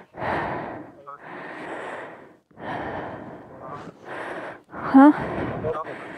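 A person's heavy breathing, about five long breaths in a row, with a short voiced "huh?" about five seconds in.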